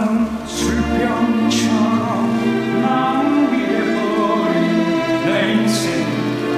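A musical-theatre song: a voice singing a slow, sustained melody over orchestral accompaniment.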